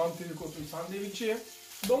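Slices of smoked beef frying in olive oil in a wok over medium heat: a low sizzle heard under talking.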